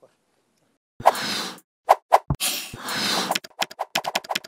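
Sound effects for an animated end-card graphic: after about a second of silence, a noisy whoosh, a few sharp pops, a second longer whoosh, then a quick run of about eight rapid clicks near the end.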